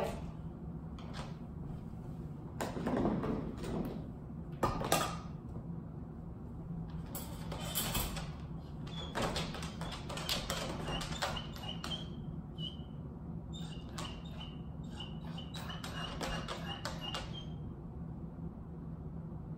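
Wire dog crate rattling and clicking as its door is swung shut and the dog shifts about inside. Short high-pitched squeaks come again and again in the second half.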